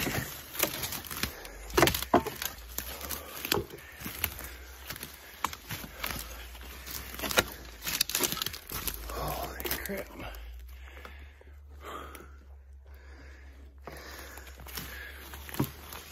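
Footsteps and brush crackling as a man hikes through forest undergrowth, with heavy breathing. The steps and crackles are dense at first and thin out, getting quieter, after about ten seconds.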